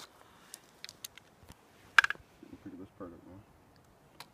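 Light clicks and knocks of a crossbow being handled, with one sharp click about two seconds in. A faint low murmur of voice follows.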